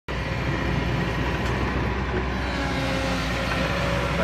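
Kobelco hydraulic excavator's diesel engine running steadily under work, a constant low rumble with a hum.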